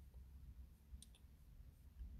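Near silence over a low hum, broken by two faint, short clicks about a second in.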